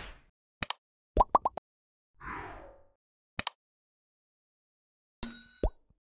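Animated like-and-subscribe sound effects: a couple of clicks, three quick rising pops, a short swish, another click, and near the end a ringing bell-like ding.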